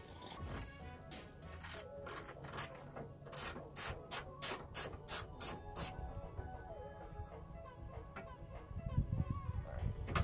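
Ratchet wrench clicking in quick, even runs, about three a second, as the fender bolts are backed out, then only a few scattered clicks.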